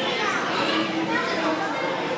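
Children's voices and people talking nearby, a steady mix of chatter with no single voice standing out.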